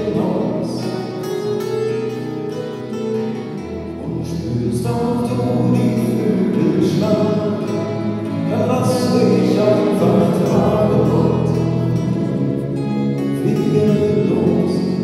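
Live acoustic folk-rock song by a small band: strummed acoustic guitars, bass and drums, with a sung melody. The sound echoes heavily in the reverberant church, muddying the detail, so the lyrics are hard to make out.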